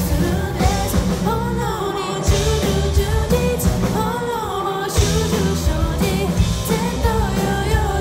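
Live rock band playing a J-pop rock song: a young female lead vocalist singing in Japanese over electric guitars, bass guitar and a drum kit. Just before five seconds in the bass and drums briefly thin out, then the full band comes back in with a hit.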